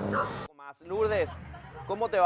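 High-pitched shouting and cries of alarm from people caught up in a brawl between bus crews, in short calls that rise and fall in pitch. The sound breaks off abruptly near a quarter of the way in, and further cries follow.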